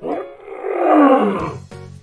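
Lion roaring: one loud, rough roar that swells to a peak about a second in, then falls in pitch as it fades. Background music comes in near the end.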